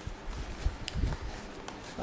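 A cardboard parcel and its foam packing are handled: faint rustling, a single sharp tick a little under a second in, and a few soft low thumps.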